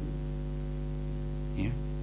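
Low, steady electrical mains hum, with a man briefly saying "ya" near the end.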